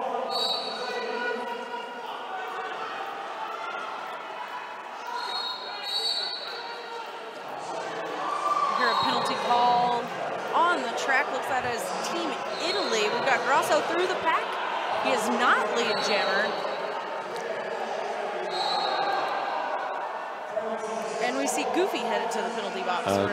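Quad roller skates on a hall floor during a jam: many short squeaks from wheels and stops sliding on the floor. Brief high referee whistle blasts come every few seconds, over the voices of skaters and spectators.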